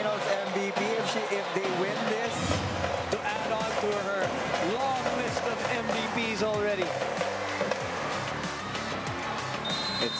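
Large arena crowd cheering and shouting, with the fast clacking of inflatable thundersticks beaten together. A low pulsing beat joins in about two seconds in.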